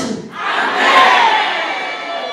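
A crowd of many voices shouting together, swelling about half a second in and then tailing off.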